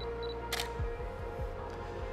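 A DSLR camera's shutter fires once, a sharp click about half a second in, over steady background music.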